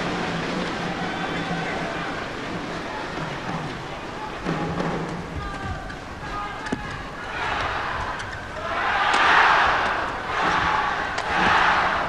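Large badminton arena crowd: a steady din of many voices that swells into loud cheering twice during a rally in the second half. A few sharp racket strikes on the shuttlecock are heard.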